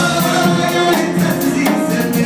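Klezmer band playing live, a man singing over the instruments with a steady beat of about four strokes a second.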